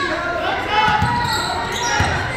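Basketball bouncing on a hardwood gym floor, two low thumps about a second apart, under people's voices in a large gym hall.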